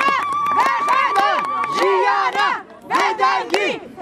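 A group of women chanting and calling out in high voices, with one voice holding a long high note for about two seconds, over hand-clapping.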